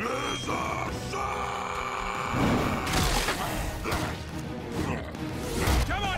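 Action film soundtrack: a dramatic orchestral-style score mixed with fight sound effects, including several loud crashing impacts about two, three and six seconds in.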